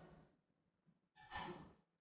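Near silence in a pause between sentences, with one faint, short breath into the close microphone a little past halfway.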